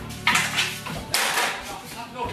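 Hockey sticks clattering and banging against a metal trash can used as a goal: two loud metallic hits, about a quarter second in and just over a second in, each ringing out briefly.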